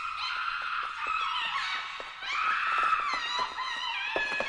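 A high-pitched wailing voice that glides up and down in pitch and sounds thin, with no low end, over faint ticks.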